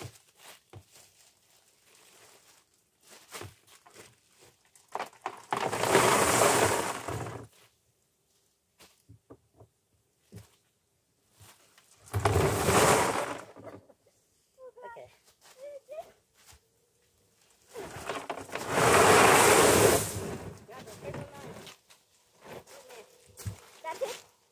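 Gravel poured out of a tall plastic bin onto a tarp: three separate pours of rushing, rattling stone, each lasting a couple of seconds, with small stone clicks between them.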